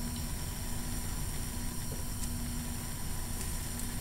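Steady hiss of a lit Bunsen burner's gas flame, with a faint steady low hum under it.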